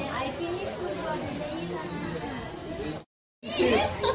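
People talking and chattering around a toddler. The sound drops out completely for a moment about three seconds in, and the voices come back louder.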